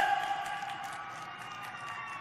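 A pause in a man's speech over a public-address system. His last word rings on in the venue's echo and fades, leaving faint steady room noise with a few thin steady tones.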